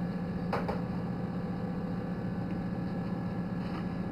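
Little Giant circulated-air incubator's fan motor running with a steady low hum. A brief soft knock about half a second in.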